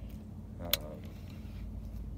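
Steady low hum of the boat's motor, with a single sharp click about halfway through.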